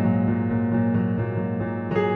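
Solo piano playing a slow passage of held, sustained chords with soft upper notes, and a new chord struck near the end.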